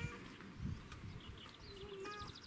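Faint open-air background with distant animal calls: a held, pitched call fading out at the start, then a few short, high chirps in the second half, over a low rumble.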